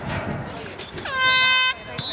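One loud air-horn blast of a little over half a second, about a second in. It is a single brassy note that settles slightly downward in pitch at the start, holds steady, then cuts off sharply.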